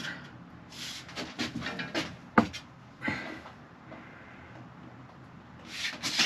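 Tape measure and tools being handled: soft rustling and a few small clicks, with one sharper click about two and a half seconds in, then a low steady background.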